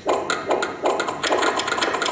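A sound effect from a tablet story app played over loudspeakers in a room: a dense, noisy rattle full of quick clicks that starts abruptly.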